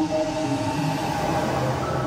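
Live electronic music from a synthesizer and electronics rig: a wash of noise swells over held tones, then thins out near the end.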